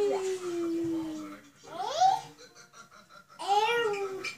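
Small children's voices without words: a long, drawn-out call that slowly falls in pitch, a sharp rising squeal about two seconds in, and laughing, babbling vocalising near the end.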